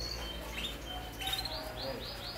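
Domestic canaries singing in their cages: a few short chirps, then from just past the middle a rapid string of repeated rising-and-falling trill notes, about four a second.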